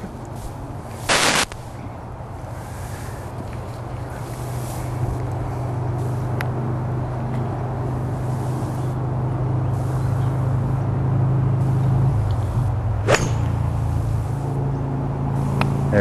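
A 5-iron striking a golf ball off the turf once, a single sharp crack about thirteen seconds in. Under it, a low steady engine drone builds through the middle and eases off, and a brief loud rush of noise comes about a second in.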